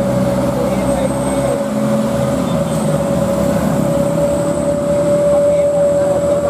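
Mitsubishi Fuso Canter dump truck's diesel engine pulling up a climb under a full load of sand, with a steady high whine held over the engine note throughout.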